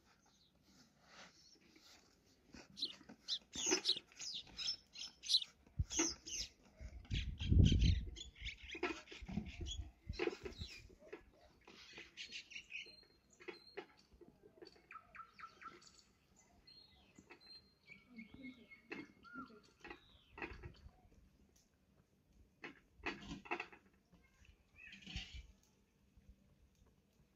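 Small birds chirping off and on, mixed with soft rustling and tapping of hands working dough on a cloth. A few dull low bumps come in the first half.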